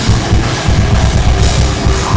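Heavy rock band playing live: electric guitars over a drum kit, with rapid, pounding bass drum beats and a wash of cymbals.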